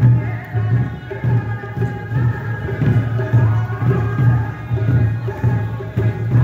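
Festival parade music: a steady drumbeat with a melody held over it, accompanying the dancers.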